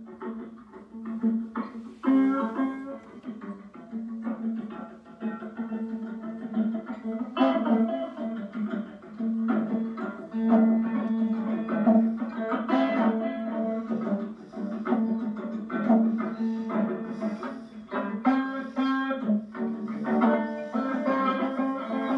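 Acoustic guitar playing a rough blues, with chords struck again and again over a steady low droning note. It is heard as played back through computer speakers.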